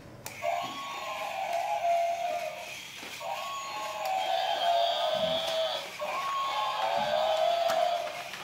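Battery-operated walking toy animal playing its electronic sound effect through its small built-in speaker, a repeating phrase about every two and a half seconds.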